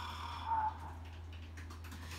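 The tail of a man's drawn-out, hesitating "iyaa" trailing off about half a second in, over a steady low electrical hum. A few faint clicks come near the end.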